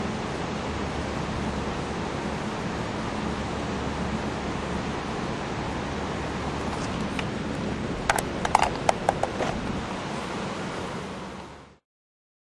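Steady outdoor rushing noise with a faint low hum, broken by a quick run of sharp clicks about eight seconds in; the sound cuts off abruptly just before the end.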